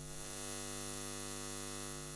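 Steady electrical buzzing hum of a neon sign, a sound effect laid under a neon-lettering title graphic.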